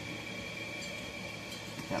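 Steady low machine hum with a faint, thin high whine, unchanging throughout.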